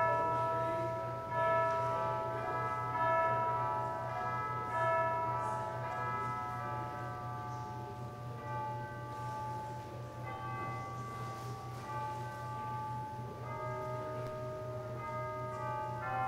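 Bell-like chiming music, several pitched tones struck together and left to ring, with new strikes about every second and a half in the first few seconds and softer ringing after. A steady low electrical hum runs underneath.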